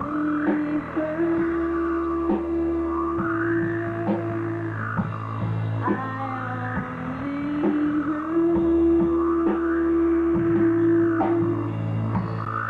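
Live indie rock band playing an instrumental passage on electric guitar and drums, with no singing. A long held note returns in a slow cycle about every six seconds, over steady drum strokes.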